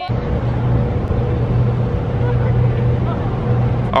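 A steady low motor hum under a broad rush of noise, with a faint steady higher tone. It cuts in and out abruptly.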